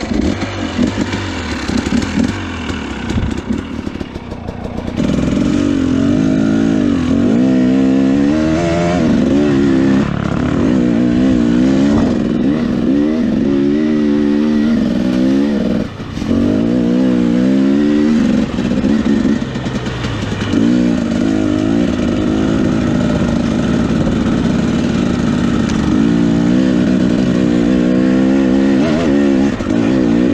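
2017 Husqvarna TE 250 two-stroke enduro engine ridden uphill on a rough trail. It runs lightly for the first few seconds, then its pitch rises and falls over and over as the throttle is worked, with one brief drop about halfway through.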